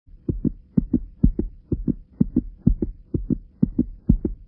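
Heartbeat sound effect: steady paired low thumps, lub-dub, about two beats a second.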